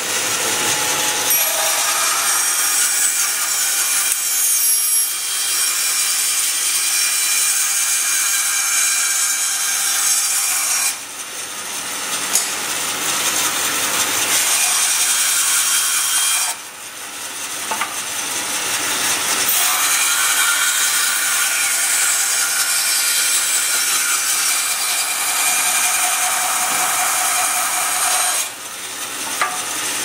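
Bandsaw cutting through a block of horn, a loud steady rasping, roughing out a knife-handle blank. The cutting noise dips briefly three times as the cut eases off, then picks up again.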